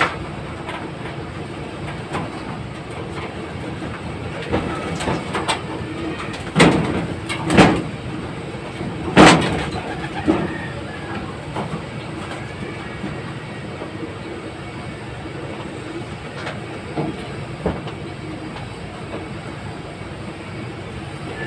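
Pigeons being handled in a wire loft cage: steady background noise with scattered clicks and three louder short bursts of movement between about six and a half and nine and a half seconds in, the last the loudest.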